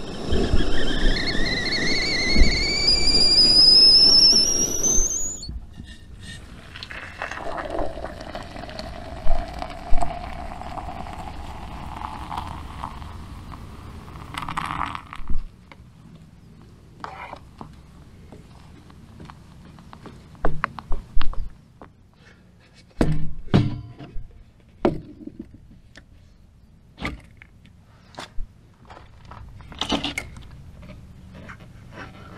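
Stovetop whistling kettle whistling at the boil, its pitch rising, then cutting off suddenly about five seconds in. Hot water is then poured into a steel mug, the pouring sound rising in pitch as the mug fills, followed by scattered clinks and knocks of a spoon stirring and a lid being fitted.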